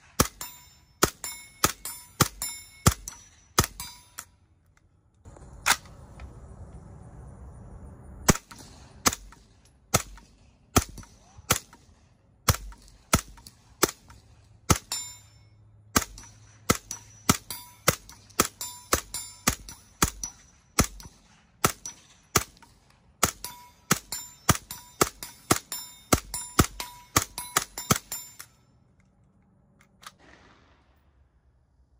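Suppressed 9mm H&K SP5 fired semi-automatic in steady strings of about two shots a second, each shot followed by a short metallic ring from steel targets being hit. The firing breaks for about three seconds around the fifth second, when only a steady low noise is heard, then resumes and stops about two seconds before the end.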